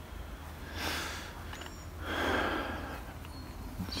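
A person breathing close to the microphone: a short breath in about a second in, then a longer breath out about two seconds in.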